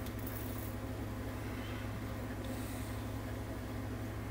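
Room tone: a steady low hum with no other distinct sound.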